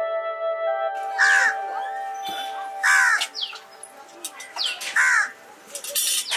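A crow cawing three times, about two seconds apart, after a held synthesizer chord of background music that stops about a second in.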